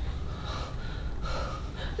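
A person breathing audibly, a couple of soft breaths over a low room rumble.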